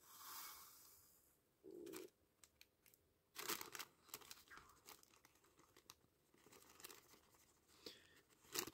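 Faint crinkling and rustling of a paper filter being folded and tipped as dry copper powder is poured from it into a glass beaker. It comes in a few short bursts with small clicks between, otherwise near silence.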